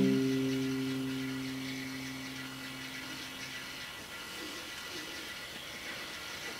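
Last strummed chord on an acoustic guitar ringing out, fading away over about four seconds until only faint hiss is left.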